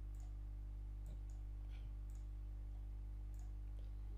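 A few faint computer mouse clicks, scattered irregularly, over a steady low hum.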